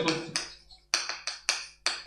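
Chalk writing on a blackboard: a string of about five or six sharp taps and short scrapes as each letter is struck out.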